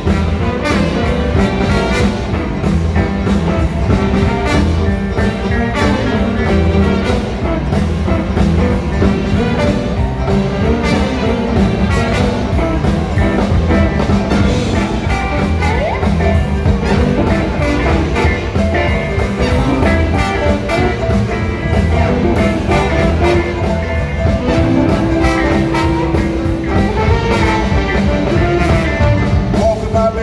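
Live blues band playing an instrumental boogie-woogie passage with electric guitar, horns and piano over a steady beat, a long held note sounding about twenty-five seconds in.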